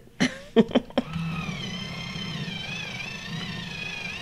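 A short laugh, then an electric pencil sharpener runs for about three seconds as a coloured pencil is ground in it: a steady low hum with a high whine that wavers in pitch under the load.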